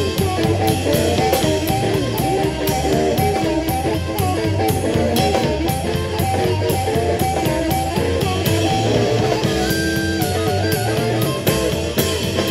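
Live blues band playing: a harmonica blown into a microphone, with electric guitar, bass guitar and drums.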